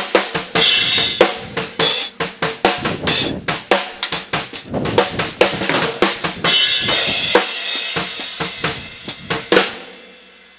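Acoustic drum kit played in a fast groove: snare and bass drum hits under ringing cymbals, tapering off over the last couple of seconds.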